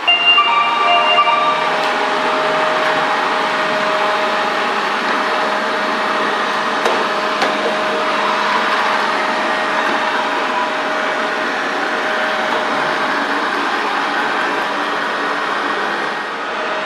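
Proscenic M7 Pro robot vacuum running steadily in its regular suction mode, a constant whirring motor and fan noise with a steady hum. A few short tones sound in the first couple of seconds, and a couple of light clicks come about seven seconds in.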